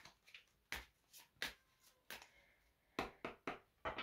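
A deck of oracle cards being shuffled and squared by hand: faint, short swishes and taps of the cards, several of them, coming closer together near the end.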